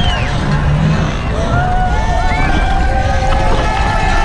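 Downhill mountain bike rattling and rumbling over a rough dirt track at race speed, with wind buffeting the camera. Spectators along the course shout, louder from about a second and a half in.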